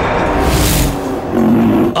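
Dramatic TV-serial background score with a roar-like sound effect: a rush of noise with a low rumble swells and fades about half a second in, over sustained low tones.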